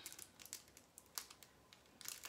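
Faint crinkling and a few light clicks of Paqui One Chip Challenge packaging being opened.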